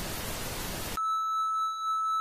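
Television static hiss for about a second, then it cuts abruptly to a steady high-pitched test-pattern tone, the beep that goes with colour bars.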